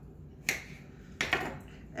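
A kitchen knife slicing through peeled eggplant, the blade striking the countertop with a few sharp taps: one about half a second in, then a quick pair just past a second in.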